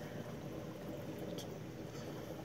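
Steady, faint water noise from a running reef aquarium, with water circulating through the tank and its pumps.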